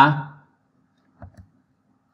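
A male voice trails off, then near silence with two faint short clicks about a second and a quarter in.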